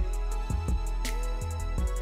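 Background music with a steady beat: a deep, sustained bass line under regular drum hits.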